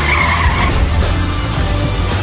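Car tyres squealing briefly, for under a second at the start, over loud music with a heavy bass.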